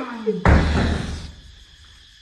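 A voice trails off, then a sudden heavy thump about half a second in, deep and loud, dying away over about a second.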